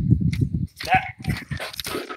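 A Boer goat buck makes a rapid run of low grunts lasting about half a second.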